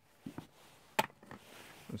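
A few soft taps and one sharp click about a second in, from small parts and tools being handled on a table.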